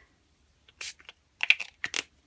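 Small pump spray bottle of Distress Spray Stain being spritzed in several quick, short bursts, starting a little under a second in.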